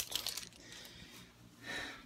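Tape measure being handled and its steel blade drawn out: a few faint clicks at first, then a short soft scraping hiss near the end.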